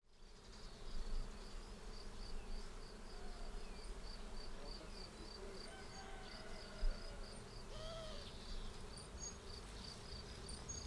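Crickets chirping faintly and steadily, about three short high chirps a second, in quiet garden ambience, with a brief gliding call about eight seconds in.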